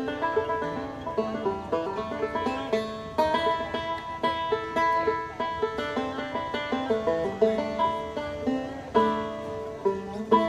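A bluegrass band playing an instrumental fiddle tune, with quick plucked banjo notes to the fore.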